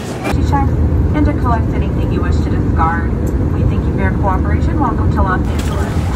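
A loud low rumble with people's voices over it, both starting abruptly just after the start.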